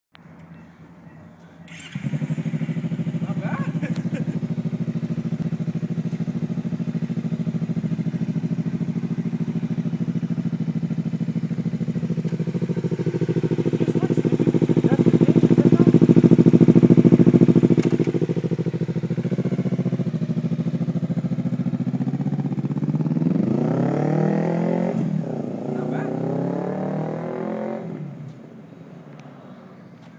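Kawasaki Ninja 300 parallel-twin with a LeoVince carbon slip-on exhaust starting about two seconds in and idling steadily, louder for a while midway. Near the end it pulls away, the pitch rising and dropping twice as it rides off, then fading.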